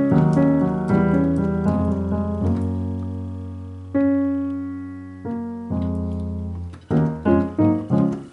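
Piano sound from a digital keyboard playing sustained gospel chords in C-sharp over a held bass note. A new chord is struck strongly about four seconds in, and a quicker run of short chords comes near the end.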